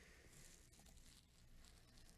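Near silence: faint room tone with a faint single click, such as a computer mouse button, a little way in.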